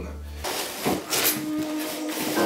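Rustling of cardboard and plastic packaging being handled, with a soft knock about a second in, over quiet background music.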